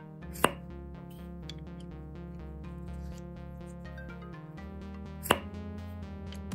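Background music, broken twice by a sharp pop, about half a second in and again near the end. The pops come as the lapped cylinder is pulled off its stainless piston, the sign of a close, air-tight fit.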